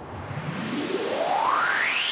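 Synthesizer riser: a swelling wash of noise with a tone sweeping steadily upward in pitch, growing louder, as an intro build-up to a song.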